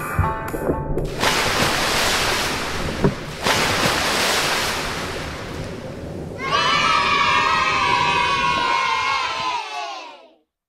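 Pop music breaks off about a second in, giving way to a few seconds of splashing water as children plunge into a swimming pool, with one sharp slap about three seconds in. From about six seconds in, several children shout and cheer in high voices, fading out just before the end.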